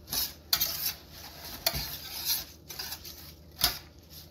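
Wire whisk stirring and scraping through a wet oat mixture in a metal baking pan, with several sharp clinks as the whisk strikes the pan.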